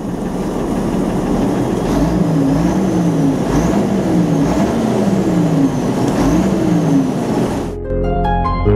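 Fendt Vario tractor's diesel engine revved up and down over and over, the pitch climbing and dropping several times in quick succession, with a faint high whistle rising and falling along with it.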